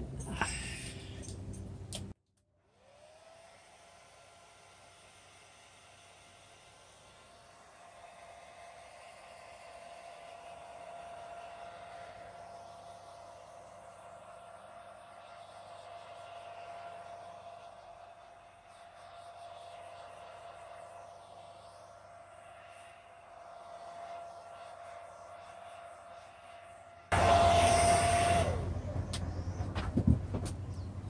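Hand-held blow dryer running over a wet acrylic paint pour, blowing the paint across the canvas: a steady rush of air with a steady whine. It is loud for the first two seconds and the last three, and much fainter in between.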